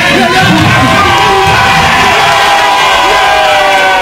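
A crowd of people singing and shouting together, many voices holding long notes that bend down in pitch near the end.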